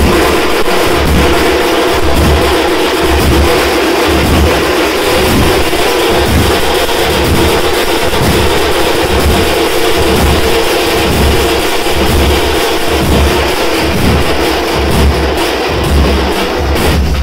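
Tamil thappu frame-drum troupe, many drums struck with sticks, playing a loud, continuous rhythm with deep beats recurring at a regular pulse under a dense stream of strokes.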